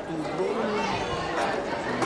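Speech only: people talking, with chatter from people around.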